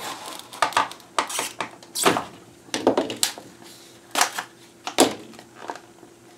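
Stiff plastic blister packaging being cut with a utility knife and pried apart: a series of irregular sharp crackles and scrapes.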